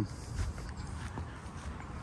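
A few soft footsteps on grass over a faint low rumble.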